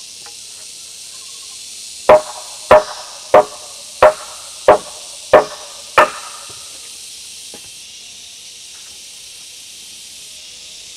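Seven evenly spaced hammer blows on the wooden house frame, about one and a half a second, each with a short ring, over a steady high hiss of insects.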